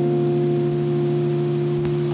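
A jazz guitar chord held and left to ring, several steady, pure, almost bell-like tones sustaining evenly.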